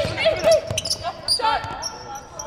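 Basketballs bouncing on a hardwood gym court during team practice, with players' voices calling out.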